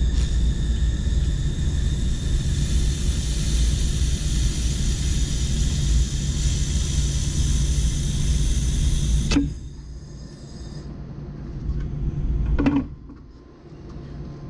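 Handheld laser welder with wire assist running a weld along an eighth-inch aluminum butt joint: a steady hiss over a low hum for about nine seconds, ending with a click. A quieter hum remains, with a short knock near the end.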